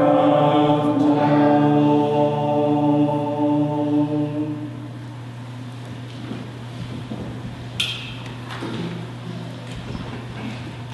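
A church choir holding its final chord, which ends about four and a half seconds in. After that come soft shuffling and a sharp click about eight seconds in as the choir sits down, over a low steady hum.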